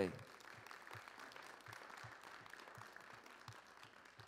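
Congregation applauding, faint and even, thinning out near the end.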